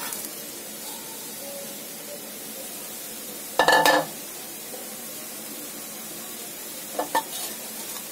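Wooden spatula scraping crumbled jaggery off a ceramic plate into a pan of grated coconut, over a steady low hiss. One louder, squeaky scrape comes about three and a half seconds in, and a smaller one near the end.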